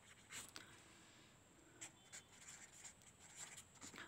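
Faint scratching of a pen writing on lined notebook paper, a few short strokes.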